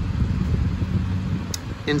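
Steady low machine hum, like a fan running, with a single light click about one and a half seconds in.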